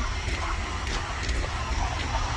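Wind buffeting the microphone outdoors: a steady, rumbling noise with no other distinct sound standing out.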